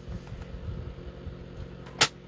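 Low rubbing and handling noise as cardstock is slid into place on a paper trimmer for scoring, over a steady low hum. It ends in a single sharp click.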